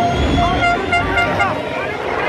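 Several motocross bike engines revving up and down as riders take the jumps, over the noise of a crowd of spectators.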